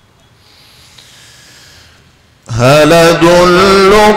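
Quran recitation in the melodic mujawwad style by a male reciter into a microphone. A long, held, ornamented note starts abruptly about halfway through after a quiet pause, stepping up slightly in pitch.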